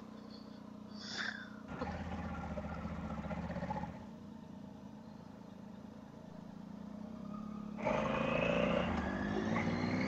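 Motorcycle engine running under way, heard from the rider's own bike. It eases off for a few seconds in the middle, then picks up again near the end with a rising pitch as it accelerates.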